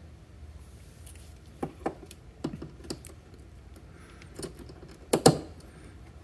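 Scattered small clicks and taps of hands handling wires and a soldering iron on a desk, over a low room hum; the loudest is a sharp double knock about five seconds in.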